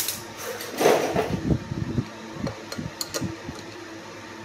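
Small metal clicks and knocks at irregular intervals as an adapter and holding mould are fitted into the drill chuck on a stopped polishing motor's shaft. A louder handling noise comes about a second in, over a faint steady hum.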